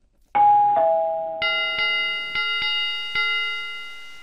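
Chime sound effects: a two-note ding-dong that falls in pitch, then a brighter notification-style bell struck about five times in quick succession, each strike ringing on and fading.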